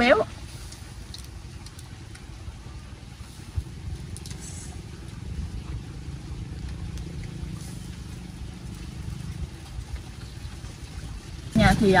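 A low steady rumble, with a few faint clicks of a spoon against grilled clam shells about four seconds in.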